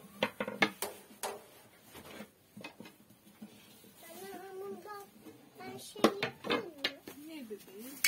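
Dishes and cutlery clinking and knocking at a meal, a quick run of sharp clinks in the first second or so and a few more a couple of seconds later.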